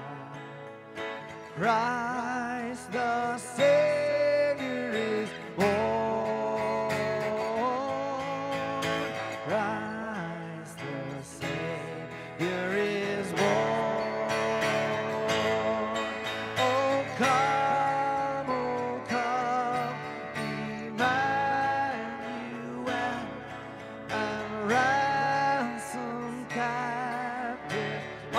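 A man singing a slow carol with vibrato on the held notes, over his own strummed acoustic guitar.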